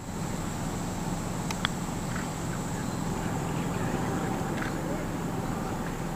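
Quiet golf-course ambience with a steady low hum, and a faint tick of the putter striking the golf ball about one and a half seconds in.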